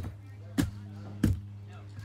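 Three sharp knocks on weathered wooden deck boards, about two-thirds of a second apart, over a steady low hum.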